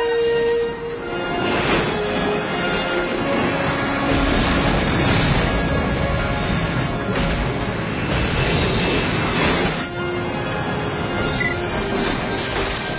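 Film score playing under loud battle sound effects: explosions and rushing blast noise that swell several times, easing off near the end.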